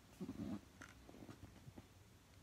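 A brief, faint, low hum-like sound about a quarter of a second in, lasting under half a second, with a few faint ticks around it.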